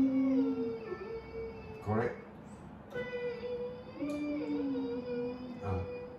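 A child singing long held vocal warm-up notes over electronic keyboard notes. The held notes step and sag slightly in pitch, with short breaks between phrases.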